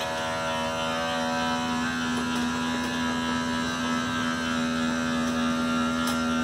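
Electric motor of a travel trailer's Accu-Slide slide-out running steadily as the slide room extends: a constant buzzing hum that holds one pitch throughout.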